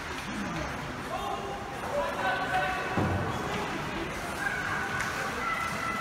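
Hockey rink ambience: indistinct voices call and shout across an echoing arena during a kids' game, with a sharp knock about halfway through.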